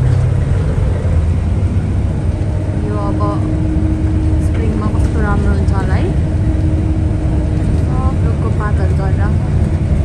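Steady low drone of a moving bus's engine and road noise heard inside the passenger cabin. A voice speaks briefly a few times over it, about three, five and eight seconds in.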